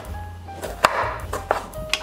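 Chef's knife cutting limes on a wooden cutting board: a few sharp knocks of the blade reaching the board, the loudest a little under a second in, over soft background music.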